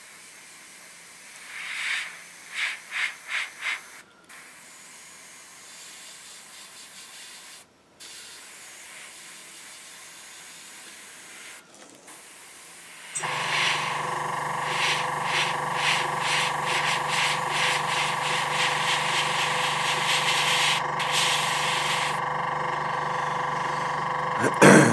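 Airbrush spraying paint with a faint steady hiss of air, with a few short louder spurts about two to four seconds in. About halfway through, a motor, most likely the airbrush compressor, cuts in suddenly and runs with a steady hum that is much louder than the spraying.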